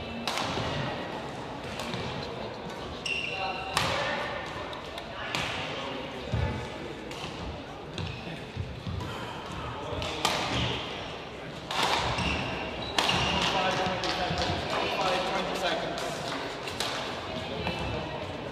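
Sports hall ambience between badminton rallies: voices chattering, with sharp knocks and thuds every second or two.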